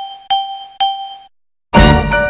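A bell-like chime struck on one pitch about twice a second, twice more, each ring dying away. It stops, and after a brief silence music on a piano-like keyboard starts with a loud chord near the end.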